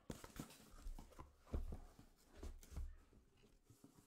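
Sealed cardboard hobby boxes being handled and set down, with light rustling and scraping and a few soft thumps.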